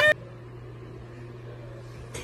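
A shout cuts off abruptly right at the start. Then a faint, steady low hum with light background hiss follows: quiet room tone.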